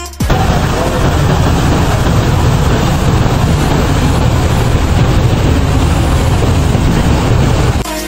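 A motorboat under way: the steady rush of its churning wake and engine, with a strong low rumble, starting suddenly just after the start and cutting off near the end.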